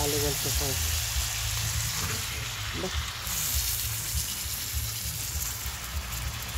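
Whole chicken sizzling steadily on a hot comal, with a low uneven rumble underneath.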